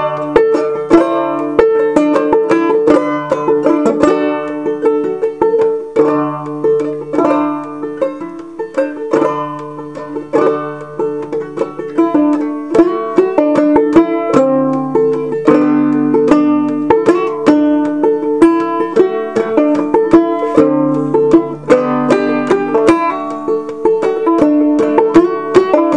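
Gold Tone five-string banjo with Nylgut strings, tuned aDADE and played clawhammer style: a steady run of picked melody notes with the high drone string ringing between them.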